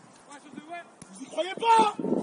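Voices calling out across a football pitch during play, faint at first, with a loud shout near the end.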